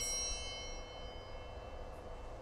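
High, bright chime bells that rang for the elevation at the consecration, dying away within about the first second, leaving a faint steady hum.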